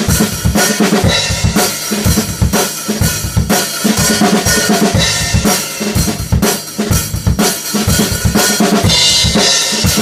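Acoustic rock drum kit played hard in a driving beat: bass drum and snare hits with cymbal crashes washing over them, brightest near the end.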